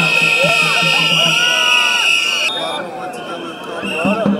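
Many protest whistles blown at once, a loud, steady shrill whistling over a crowd's shouting voices. The whistling cuts off abruptly about two and a half seconds in, leaving only crowd voices.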